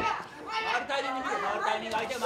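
Several voices shouting over one another from ringside, the coaching calls of the fighters' corners during a kickboxing round.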